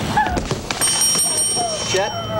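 A skateboard clattering and knocking on a wooden deck as a skater falls off it, followed about a second in by a high, bell-like ringing tone held for about a second.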